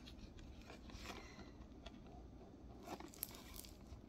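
Faint crinkles and small clicks of a clear plastic blister package being handled and turned in the hands, a few slightly louder about three seconds in.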